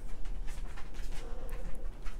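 Soft, irregular swishing strokes of a powder blush brush swept across the cheek and temple.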